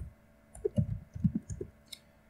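Computer keyboard being typed on: a run of irregular keystrokes, ending with a sharp click near the end.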